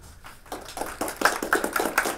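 An audience applauding: scattered hand claps that start about half a second in and quickly thicken into steady clapping.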